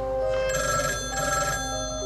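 Landline desk telephone ringing: a double ring, two short bursts close together, over sustained background music.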